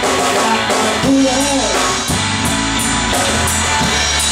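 Live blues-rock band playing loud and steady: electric guitar, bass guitar and drum kit together.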